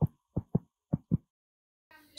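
A heartbeat sound effect: paired low thuds, lub-dub, at a fast pace of a little under two beats a second, stopping just over a second in.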